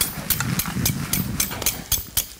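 Rhythmic strokes of a metal knife blade worked against another metal utensil, about four or five sharp strokes a second, keeping an even beat.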